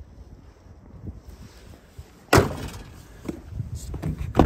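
The bonnet of a Peugeot Boxer van slammed shut once, loudly, about two and a half seconds in, followed by a few light clicks.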